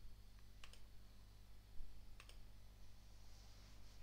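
A few computer mouse clicks, the clearest about two seconds in, over a faint steady low hum.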